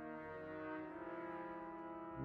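An ensemble of French horns plays soft, held chords whose notes shift a couple of times.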